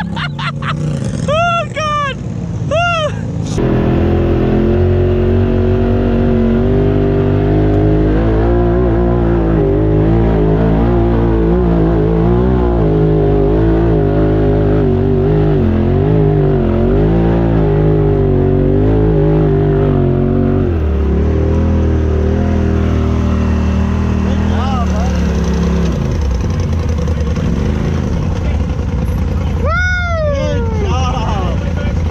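Polaris RZR side-by-side UTV engine heard from inside the cab. It revs in two quick rising-and-falling bursts in the first few seconds, then runs steadily with a wavering pitch as the machine works up the hill. About 21 seconds in it settles to a lower, steadier note.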